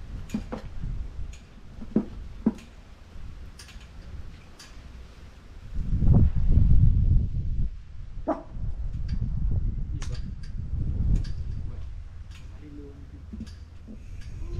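Wind buffeting the microphone in gusts, strongest about six seconds in and again a few seconds later, with scattered short clicks and ticks.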